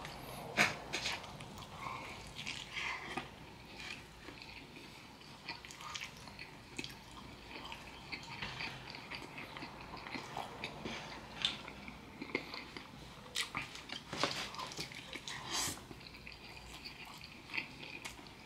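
A person chewing and biting into breaded fried chicken topped with cheese, sauce and pepperoni: quiet, irregular mouth clicks and smacks.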